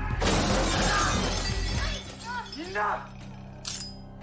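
Glass shattering in one long crash that lasts well over a second, amid a fistfight. Then come a few short vocal cries and a single sharp knock near the end.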